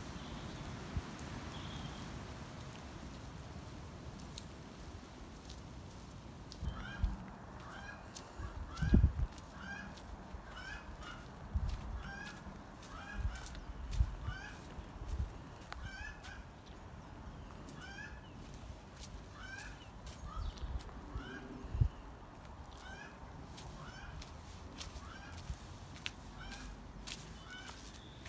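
A bird calling over and over in short, hooked calls, one or two a second, starting about a quarter of the way in and running until near the end. Under it is a low steady rumble with a few short low thumps.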